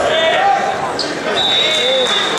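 Voices of people calling out and talking in a large gym, overlapping one another. A high, steady whistle-like tone starts about one and a half seconds in.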